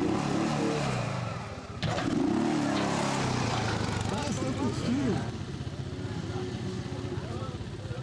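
Quad bike (ATV) engines running and revving up and down at low speed, with people talking.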